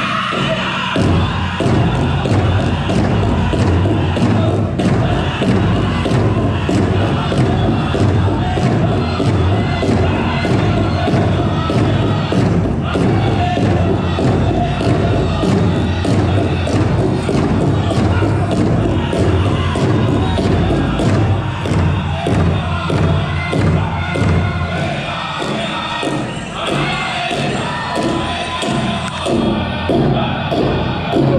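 Powwow drum group playing a fancy shawl dance song: singers over a big drum struck in a steady fast beat, with the crowd cheering and whooping.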